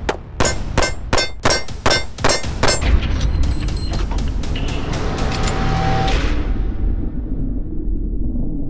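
A 1911 pistol fired in a rapid string, about three shots a second for the first three seconds, then quicker, fainter cracks. Underneath is a music bed with a deep low rumble that swells about three seconds in.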